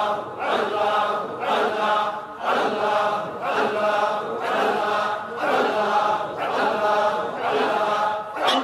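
Men's voices chanting zikr, one short sung phrase repeated about once a second in a steady rhythm.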